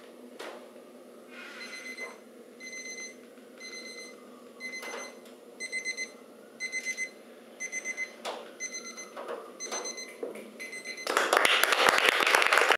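Electronic alarm beeping in quick groups of short high beeps, the groups repeating about once a second, followed near the end by a loud rush of noise.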